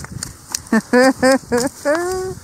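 A man laughing: a run of five short "ha" bursts, about three a second, beginning a little before the middle, with a few faint clicks before it.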